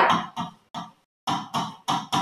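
A pen writing on a board: a run of short, separate strokes, about six in two seconds, as letters are written by hand.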